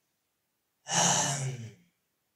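A man's single breathy, voiced sigh, about a second long, starting about a second in.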